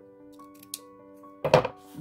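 Scissors cutting a sheet of clear plastic packaging, with small snips and one loud, sharp snip about a second and a half in.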